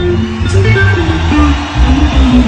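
Live reggae band playing an instrumental passage, with a prominent bass guitar line stepping through low notes.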